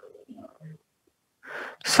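A person's faint breath and quiet low vocal murmur, then an audible breath in about a second and a half in, just before speech resumes at the very end.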